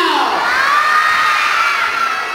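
A crowd of children shouting and cheering together in one long, high-pitched cry that rises and is held before fading near the end.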